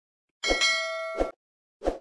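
Notification-bell sound effect for a subscribe animation: a click followed by a bright ringing ding of several steady tones that lasts just under a second and ends with a click, then another short click near the end.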